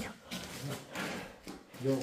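A quiet pause between speech, with faint room noise and low voices, and a voice starting again near the end.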